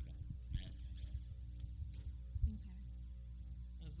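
Steady low electrical mains hum from the chamber's microphone and sound system, with a few faint knocks and one louder, sharp low thump a little past halfway.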